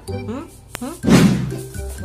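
Background music under a man's voice giving a drawn-out, questioning "Hmm?", with one sharp click just before it.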